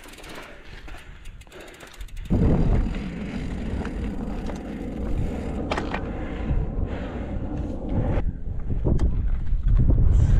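Mountain bike riding a dirt trail: light ticking at first, then about two seconds in a sudden louder rumble of knobby tyres on rough ground with rattling and clicks from the bike.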